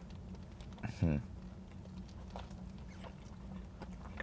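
A short voiced sound from a man, falling steeply in pitch, about a second in, over a steady low hum inside a car cabin, with faint clicks and rustles of a burger being eaten from its paper wrapper.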